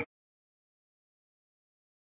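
Digital silence: the sound track is blank.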